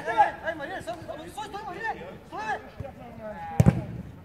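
Men's voices shouting and calling across a football pitch, then about three and a half seconds in a single sharp, heavy thump, the loudest sound here.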